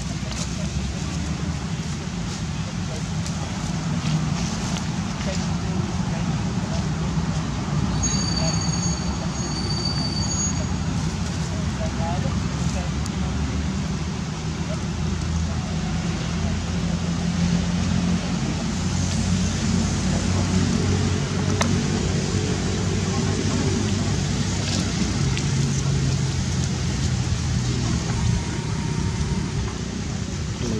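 Steady low rumble of road traffic with indistinct voices in the background. About eight seconds in, a short high-pitched tone sounds twice.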